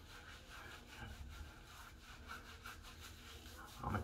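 Hands rubbing co-wash lather into a wet beard: a faint, even run of rubbing strokes, several a second.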